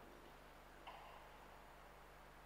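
Near silence: quiet church room tone with a steady low hum, and one brief faint click about a second in.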